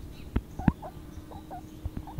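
Baby guinea pig making a string of short, soft squeaks while grazing, with two sharp clicks in the first second.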